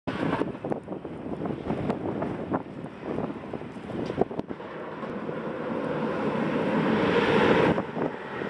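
Wind buffeting the microphone outdoors, crackling and gusting unevenly, then swelling into a louder rush over the last three seconds that drops away suddenly near the end.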